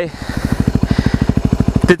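Yamaha WR250R dirt bike's single-cylinder four-stroke engine running steadily at low revs, a rapid, even pulse of exhaust beats.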